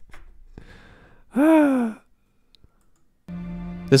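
A man sighs once, a breathy exhale whose voice falls in pitch, about one and a half seconds in. Near the end, steady background music starts.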